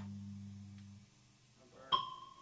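A low held note from an amplified instrument rings out and dies away about a second in, the last of the band's playing. Near the end a sudden sharp strike sets off a ringing high tone.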